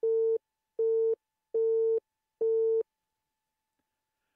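Four Morse dashes in a steady, mid-pitched keying sidetone, sent by hand on the dash side of a Begali Intrepid semi-automatic bug. Each dash is just under half a second long, and they are evenly spaced.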